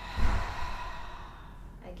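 A woman's long sighing exhale out the mouth, a deep yoga breath, opening with a low puff of breath and trailing off over about a second and a half.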